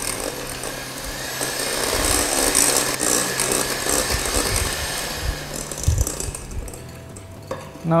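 Electric hand mixer running steadily, its beaters whisking eggs and sugar in a glass bowl to reach ribbon consistency, with a constant motor hum under the whirr of the batter. It grows quieter near the end.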